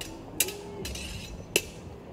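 Steel longsword blades meeting in sparring: two sharp metallic clinks with a brief scrape between them, the second clink the loudest.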